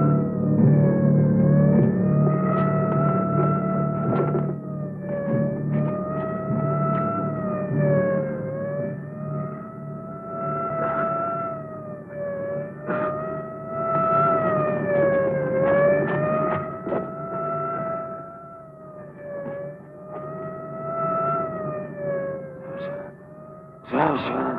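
A police siren wailing, its pitch rising and falling slowly about every four seconds. A low drone fades out in the first few seconds, and faint clicks of an old film soundtrack run under it.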